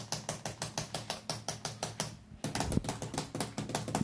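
Rapid typing on a laptop keyboard: a fast, even run of key clicks, several a second, with a brief pause about two seconds in.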